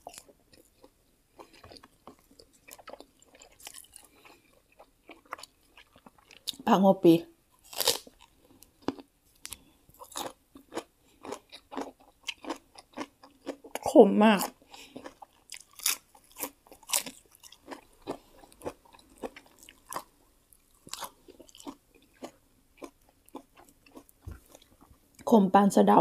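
Close-up eating sounds: a person chewing grilled pork and crisp fresh greens, with many small, irregular crunches and wet clicks. A few short spoken words break in about seven seconds in, about fourteen seconds in, and at the very end.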